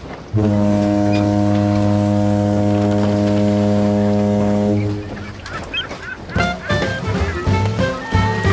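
Ferry's ship horn giving one long, steady, low blast of about four and a half seconds, then stopping. Background music with sliding notes comes in near the end.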